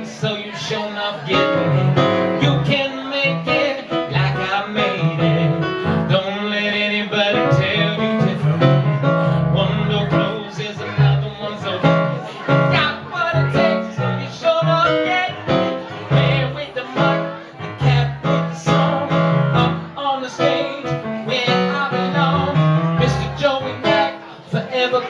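Live pop song: a Roland stage piano playing a rhythmic accompaniment, with a man singing into a microphone over it.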